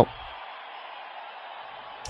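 A pause in a man's commentary, holding only a faint, steady hiss of background noise.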